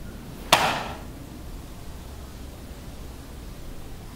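A single sharp bang about half a second in, dying away within half a second, over quiet room tone.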